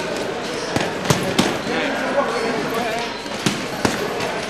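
Punches landing in a boxing gym: sharp thuds, three in quick succession about a second in and two more near the end, over a faint murmur of voices in a large room.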